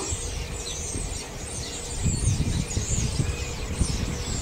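Many faint, short, high bird calls over a low, uneven rumble that grows stronger about halfway through.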